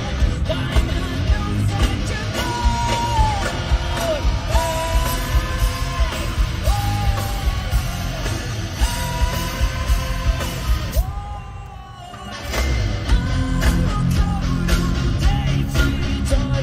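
Live three-piece rock band of drums, bass and electric guitar with a sung lead vocal, heard through a cell-phone concert recording. A little after ten seconds in the band drops away briefly, then comes back in at full strength.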